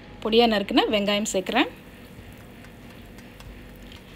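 Cumin seeds and whole spices frying in hot oil in a pot, stirred with a wooden spatula: a faint steady sizzle, heard on its own in the second half once the talk stops.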